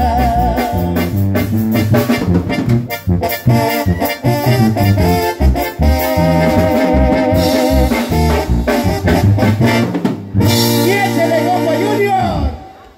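Live Mexican regional band playing the instrumental close of a corrido on electronic keyboard over bass and drums, with a steady dance beat. About ten seconds in the beat stops and the band holds a final chord.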